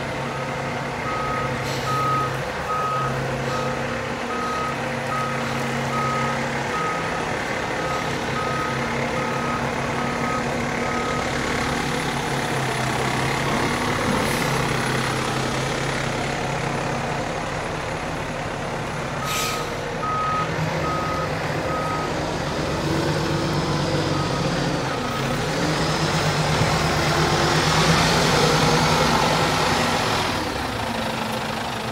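Seagrave tiller ladder truck reversing, its backup alarm beeping steadily over the running engine. The beeping stops about 11 seconds in and returns briefly around 20 and 24 seconds. The engine grows louder near the end.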